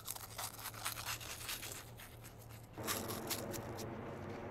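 Cheetos Twisted corn snacks being chewed close to the microphone: a quick, irregular run of crunches. A rougher, steadier noise joins near the end.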